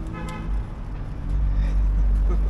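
Street traffic with a brief vehicle horn toot right at the start, followed by a low steady rumble that grows louder over the second half.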